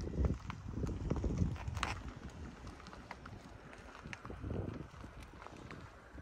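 Footsteps of a person walking at an even pace, a low thump about every half second, getting quieter after the first couple of seconds. A few light clicks are mixed in.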